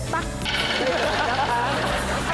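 Several people laughing and talking over one another over steady background music, starting about half a second in.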